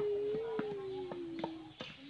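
A voice holds one long drawn-out call that rises slightly and then glides gently down, with a few sharp taps or clicks underneath.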